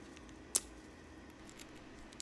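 One sharp plastic click, about half a second in, as the two halves of a 3D-printed two-touch harness buckle are handled and fitted together; faint handling noise otherwise.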